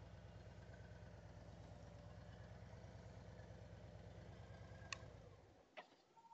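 Faint Harley-Davidson Street Glide V-twin engine idling as the bike creeps along on the clutch friction zone with hardly any throttle, a steady low rumble with even pulses. A faint click near five seconds, and the engine sound drops away shortly before the end.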